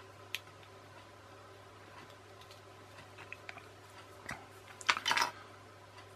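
Small clicks and taps of the plastic and metal parts of a toy's clockwork motor being handled in the fingers, sparse and light, with a louder short clatter about five seconds in. A faint steady low hum sits underneath.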